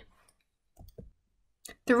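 A pause between spoken sentences: near silence broken by a few faint, short clicks about a second in, before speech resumes near the end.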